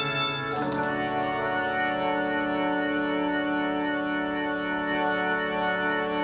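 Closing instrumental chord of a slow song: many notes held steady together without fading, after a change of chord about half a second in.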